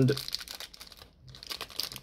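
Clear plastic candy wrapper crinkling in the fingers as it is torn open along its perforation, with a brief lull about a second in.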